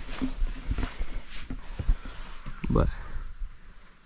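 Footsteps on sawdust-covered ground, a string of irregular soft thuds, with insects chirring steadily in the background.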